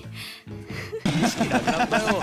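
Anime episode soundtrack: background music with a character's voice. In the second half, a man's laughter in quick pulses joins it.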